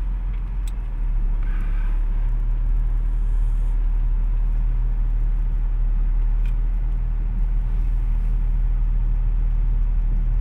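Steady low rumble of a car's engine and road noise, heard from inside the cabin as the car creeps along in heavy traffic; it grows a little louder about a second in.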